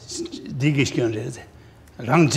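Speech only: a man's low voice, a short murmured phrase the recogniser did not catch, trailing off about a second and a half in.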